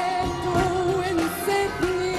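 A woman singing an Arabic song live with band accompaniment, holding long notes with a slight waver in pitch.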